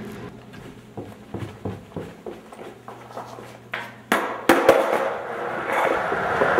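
Footsteps on a hard floor, then a few sharp knocks about four seconds in as a skateboard hits the ground. After that comes the steady rush of skateboard wheels rolling on a concrete floor.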